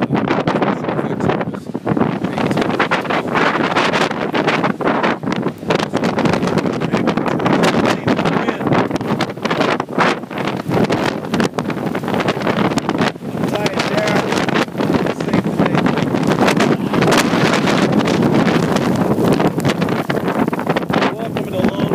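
Strong gusty wind, around 70 mph, buffeting the microphone: loud and continuous, with rapid surges and dips.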